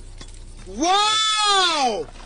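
A single long, bleat-like cry that rises and then falls in pitch, starting a little under a second in and lasting about a second.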